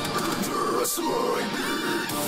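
Metalcore breakdown: heavy, distorted guitars and drums with cymbals, the low part dropping out briefly about a second in.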